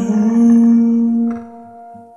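Song with one steady sung note held at the end of a vocal line, its level falling away about one and a half seconds in.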